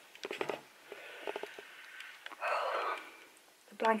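Fleece blanket rustling and brushing close to the microphone as it is pulled up around the shoulders, with a louder swish a little past halfway.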